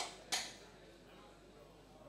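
Two sharp knocks about a third of a second apart, the second louder, over a low murmur of voices.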